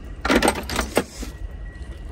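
An old Ridgid flaring tool is set down in a plastic parts bin among other tools: a rattling clatter of metal on plastic and metal, several quick knocks within about three quarters of a second, followed by quieter rummaging.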